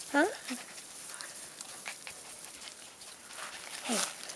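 A young puppy being held and handled close up: faint, scattered small noises and rustling of fur and hands, between a woman's brief 'Huh?' at the start and 'Hey' at the end.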